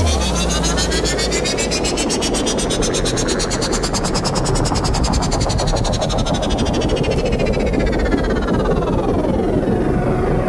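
Electronic dance music breakdown: the kick drum drops out, and a synthesizer noise sweep with layered tones rises in pitch to a peak about halfway through, then falls back down. A rapid, even, repeating tick runs under it.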